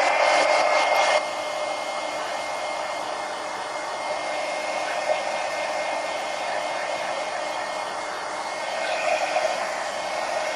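Heat gun blowing steadily as it dries a wet acrylic paint wash, a rush of air with a faint high whine under it. It is a little louder for the first second or so, then holds level.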